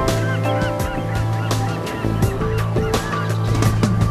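Gulls giving a quick series of short cries over instrumental intro music.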